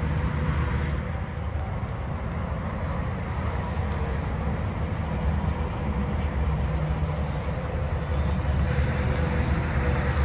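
An engine running steadily nearby, a low even drone that holds unchanged throughout.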